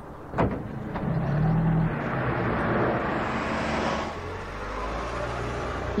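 Car engine and road noise from a car driving along a street. The sound builds about a second in, is loudest from about two to four seconds in, then eases slightly.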